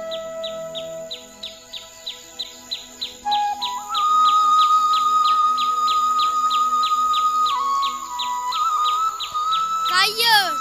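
Background music of sustained, held keyboard tones that step up to a higher note about four seconds in. Under it runs a rapid, very regular high chirping, like a bird, about three chirps a second.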